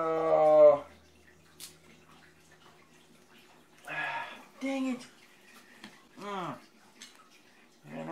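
A man's drawn-out vocal sound, the loudest thing here, in the first second. Then a few short yips and a falling whine from a small dog.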